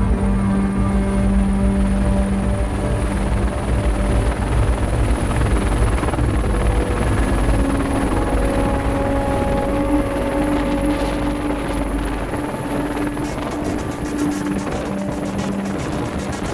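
Helicopter running: a steady high turbine whine over a dense low rotor rumble, with sustained music notes underneath.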